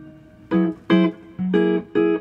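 Clean electric guitar chords from a 1967 Gibson ES-335 played through a Fender Pro Reverb amp: about four short jazz chord stabs in two seconds, each cut off quickly. They voice extended chords, ninths and flat-five/sharp-eleven substitution chords.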